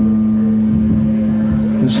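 Amplified electric guitar string ringing as one long sustained note while it is retuned at the headstock, part of retuning the guitar into open-G "Spanish tuning".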